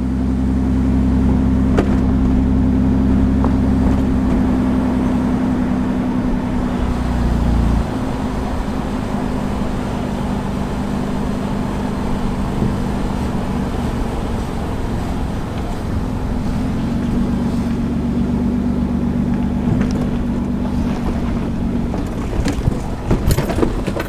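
Car engine running with road noise, heard from inside the cabin of a moving car. A steady low engine hum drops away about eight seconds in and comes back later.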